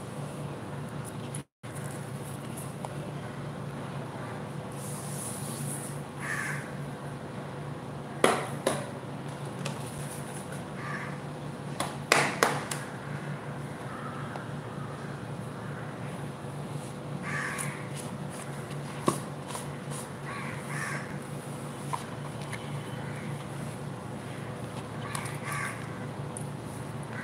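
A few short animal calls, like a bird cawing, over a steady low hum, with several sharp knocks or taps.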